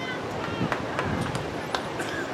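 Distant voices of players and spectators calling out across an outdoor soccer field, over steady open-air noise, with a few sharp clicks.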